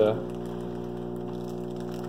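Steady electric hum from a running aquarium filter motor, even and unchanging in pitch and loudness.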